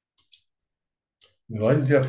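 Two faint computer-mouse clicks in quick succession a fraction of a second in, with a fainter tick about a second later. A man's voice starts speaking about one and a half seconds in and is the loudest sound.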